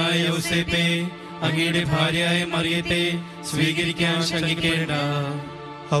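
Devotional music: a voice chanting a Malayalam prayer over a steady, drone-like accompaniment.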